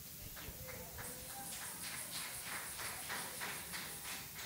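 Hard-soled footsteps on a tiled floor, a steady walking pace of about two or three steps a second.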